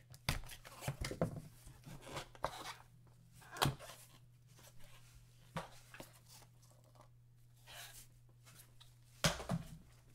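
A box cutter slits the seal of a cardboard trading-card box, followed by scattered rustles and taps as the box is opened and the cards are handled. The loudest is a sharp click a little before four seconds in, all over a faint low steady hum.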